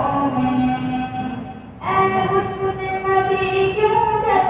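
Wordless, layered male vocals holding long chords, the voice-only backing of a naat. The chord breaks off briefly just under two seconds in and a new one begins.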